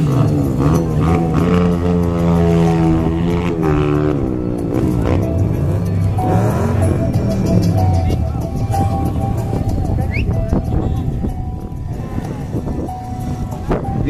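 Kawasaki Ninja ZX-14R's inline-four held at high revs through a tyre-smoking burnout, its pitch wavering up and down for the first few seconds, then settling to a steadier, slightly quieter note.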